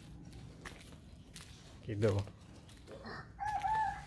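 A rooster crowing: one drawn-out, slightly wavering crow that begins about three seconds in and carries on past the end.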